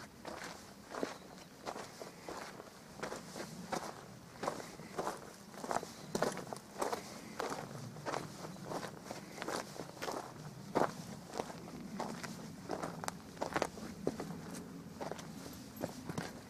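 Footsteps of a person walking at an even pace on dry dirt and loose stones, about two steps a second.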